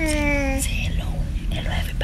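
A person's voice: one short held vocal sound in the first half-second, gliding slightly down in pitch, then soft whispered sounds, over a steady low hum.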